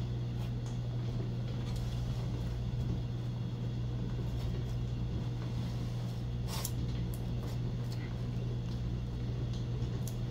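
A steady low hum with a few faint light clicks, the clearest a little before seven seconds in.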